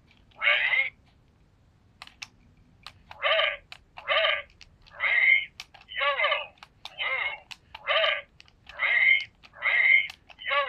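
Electronic memory-game cube toy playing its 'Remember Me' game: a string of short electronic sounds, about one a second, with sharp clicks of button presses between them. One sound comes near the start, then a pause of about two seconds with a few clicks, then the sounds run on steadily from about three seconds in.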